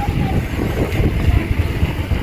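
Wind buffeting a moving phone's microphone: a loud, uneven low rumble.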